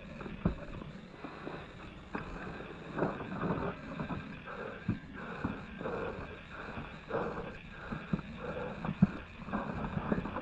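Irregular knocks and scuffs of a person clambering over cave rock, with rustling between them; the sharpest knock comes near the end.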